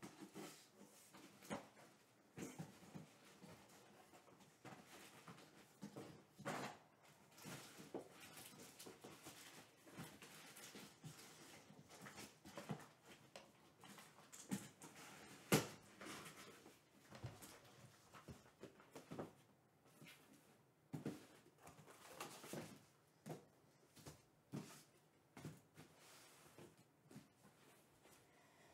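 Near silence with faint, scattered clicks and taps, and one sharper knock about halfway through.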